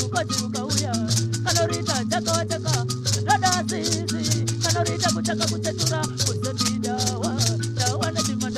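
Recorded pre-show music: a song with a fast, steady shaker rhythm over a bass line and a bending melody.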